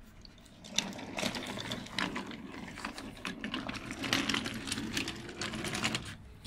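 Small wooden toy train cars rattling and clicking as they are pushed by hand along wooden track. The clatter starts about a second in and runs on unevenly.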